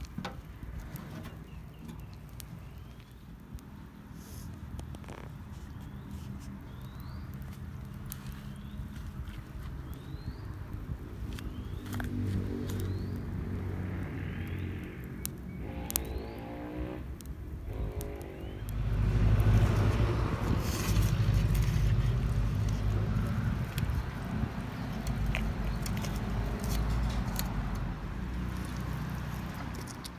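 A low engine rumble, like a vehicle passing nearby, builds up and is loudest in the last third. Earlier, a bird repeats a short rising chirp about once a second.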